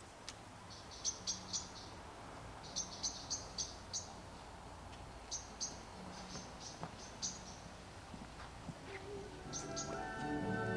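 A small bird chirping outdoors: clusters of quick, high chirps separated by pauses of a second or two, over faint background noise.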